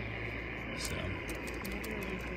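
Steady hiss of HF band noise from an Icom IC-705's speaker, tuned to 7.203 MHz on the 40-metre band, with a few faint clicks.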